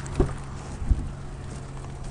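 Pickup truck door being opened by its outside handle: a latch clunk just after the start and a heavier thump about a second in, over a steady low hum.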